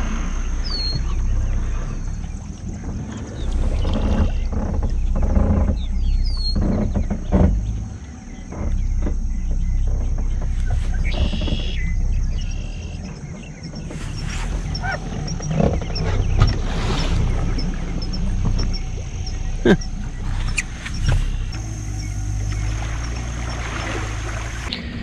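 Bass boat's outboard motor running at low speed: a low rumble that rises and falls, with dips around eight and thirteen seconds in. Occasional knocks on the hull, a few short bird chirps in the first seconds, and a thin high steady whine.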